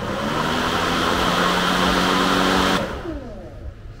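EGO LM2100 cordless mower's brushless motor and blade running at full speed with a steady airy whir. About three seconds in it is switched off and spins down, falling in pitch. It runs without cutting out, now that the replaced control board has cured its fault of starting and then flashing as if the battery were dead.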